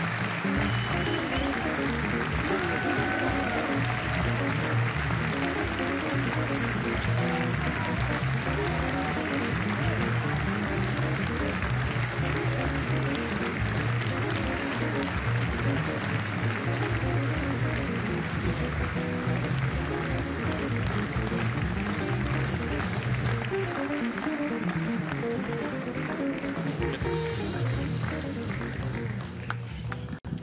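Theatre audience applauding while band music plays.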